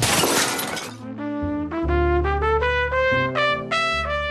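A sudden crash of something smashing. From about a second in, a jazz trumpet plays a quick run of notes climbing upward over a low bass line.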